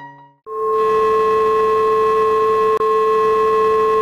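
Television sign-off test tone over colour bars: a loud, steady, unwavering tone with hiss, starting about half a second in as a soft electric piano note dies away, with a momentary dropout near the middle.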